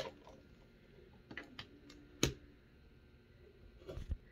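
A few light clicks and taps of an eyeshadow palette and makeup brush being handled, with one sharper click a little over two seconds in.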